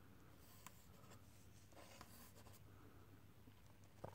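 Faint scratching of a pen drawing lines on paper.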